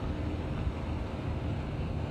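Steady low outdoor rumble of wind on the microphone mixed with distant road traffic.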